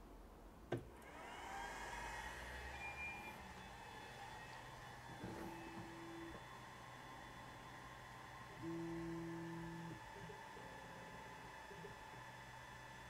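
Longer Ray 5 laser engraver being switched on: a click, then its cooling fans spin up with a rising whine and settle into a steady whir. Twice, for about a second each, its stepper motors hum at a steady pitch as the gantry moves to home.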